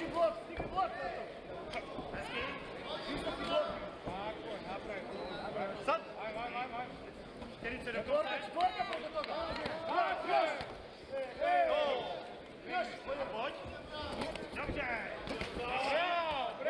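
Kickboxers' gloved punches and kicks landing, several sharp thuds scattered irregularly, over men shouting.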